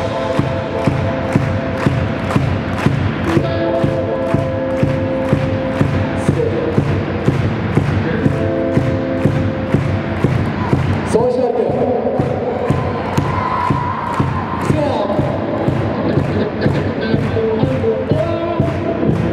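Live rock band playing: distorted electric guitars through Marshall amplifiers, bass and a drum kit keeping a steady beat, with a short break in the beat about eleven seconds in.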